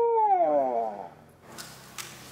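A man's scream, one long call that rises slightly and then falls in pitch, fading out about a second in; low room noise follows.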